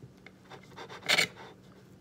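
Kitchen knife sawing through a cheese quesadilla on a plate, a soft scratchy rasping, with one short, louder scrape a little over a second in.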